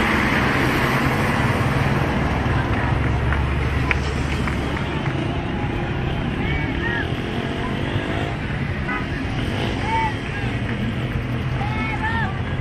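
Steady engine hum and road noise from a moving vehicle, heavier in the first half. Short shouts and calls from people rise over it now and then in the second half.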